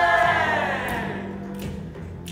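Youth choir ending a held chord with a downward slide in pitch as the sound dies away, over a steady low note. Faint soft ticks recur about every 0.7 s.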